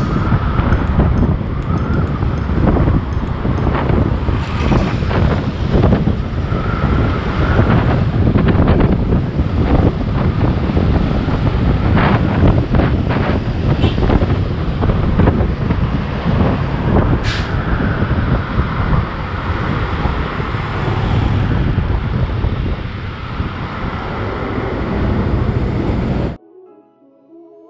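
Wind rushing over the microphone of a moving scooter, with the hum of road traffic from trucks and cars passing on a busy multi-lane road.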